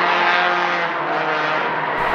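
Touring race car engine running at a steady, high note as a small hatchback takes a corner, the pitch holding with slight dips.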